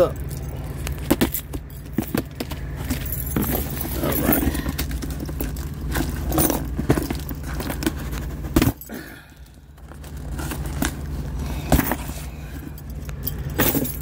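Packing tape on a cardboard box being slit and torn open with a blunt hand-held tool, then the cardboard flaps scraped and pulled apart: a run of short scrapes, rips and clicks, with a sharp knock just before 9 s.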